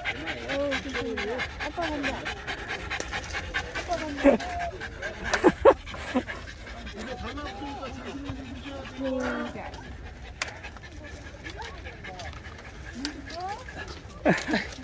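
Poodle panting quickly and hard, overheated and tired from climbing in the heat, with people's voices over it.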